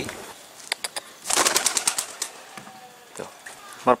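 Domestic pigeon's wings flapping as it takes off from a hand: a quick run of wingbeats a little after the first second, lasting under a second.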